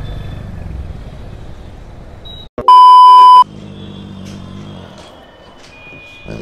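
Motorcycle engine and road noise while riding, then a sudden cut and a loud, single-pitched electronic beep lasting under a second, the dominant sound, like an edited-in censor bleep. A lower steady hum follows.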